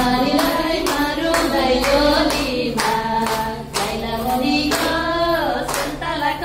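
A group of women singing a Nepali Teej folk song through a microphone, with hand claps keeping time about twice a second.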